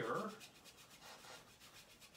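Paintbrush scrubbing against a canvas in quick, repeated strokes, a faint dry rubbing.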